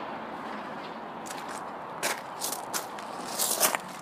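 Footsteps on gravel: a handful of short, irregular crunching steps starting about a second in, over a steady background hiss.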